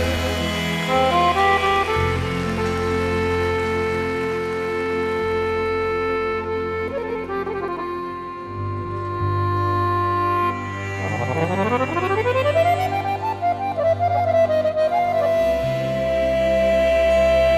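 Scandalli piano accordion playing an instrumental passage of a sevdah song with bass guitar underneath, holding long notes. About eleven seconds in it plays a quick rising run of notes that ends on a held high note.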